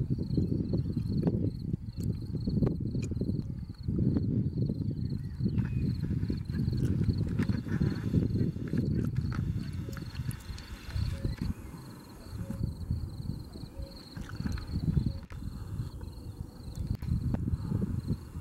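Gusty, low rumbling wind noise on the microphone, fading somewhat in the second half. A faint, steady, pulsing high insect trill runs behind it.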